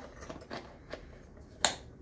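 Tool pouch being hooked onto a belt-mounted clip: light handling rustle and a few small clicks, then one sharp snap near the end as the pouch locks onto the clip.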